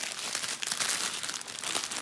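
Small plastic bags of square diamond-painting drills crinkling as they are handled in a bundle, a continuous crackly rustle made of many small crackles.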